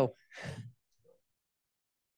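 The end of a woman's spoken "hello", then a short breathy sigh lasting about half a second.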